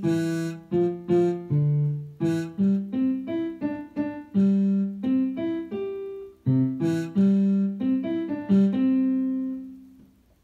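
Piano played as a melody of single struck notes, about two to three a second, ending on a held note that fades out near the end.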